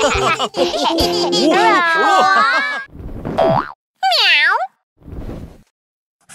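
Cartoon soundtrack: bouncy music with characters' voices for about three seconds, then cartoon sound effects, a short falling swoop and a springy boing that dips and rises again, followed by a brief swish and a moment of silence.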